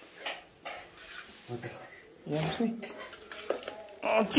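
Light clinks and scrapes of spoons and forks against stainless steel plates and bowls as people eat.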